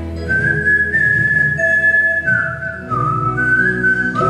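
A man whistling a melody into a microphone over a live band accompaniment: a long high held note begins about a quarter second in, then wavers and steps down to lower notes in the second half.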